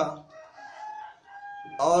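A rooster crowing faintly in the background: one drawn-out crow of about a second and a half, held on a steady pitch. A man's voice resumes near the end.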